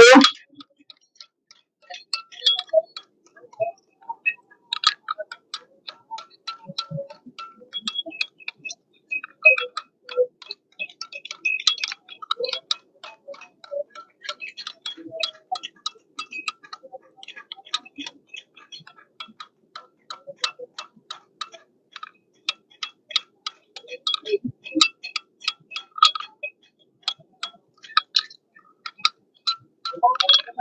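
Hammer blows on a hot steel horseshoe over an anvil, a long run of strikes a few a second, each with a short metallic ring, as the shoe is bent round into a closed circle.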